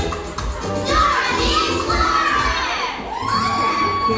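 High shouting and whooping voices over a music track with a low pulsing beat, with one long held whoop starting near the end.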